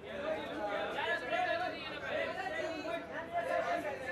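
Several people talking over one another in an indistinct hubbub of chatter.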